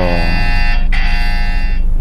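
A steady buzzing tone with several pitches at once, sounding in stretches of about a second with short breaks between them, over the low rumble of a car interior.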